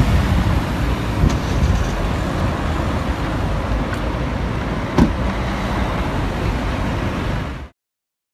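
A car running close by on a street as a police patrol car moves off slowly, with steady road and street noise. There is a single knock about five seconds in, and the sound cuts off abruptly just before the end.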